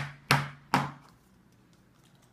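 A plastic Play-Doh can held upside down and banged three times on a wooden table in the first second, three sharp knocks, to shake loose the dough stuck inside.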